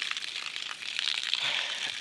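Steady hiss of spring water running, with scattered crackles and small clicks from climbing over the rock and handling plastic water bottles.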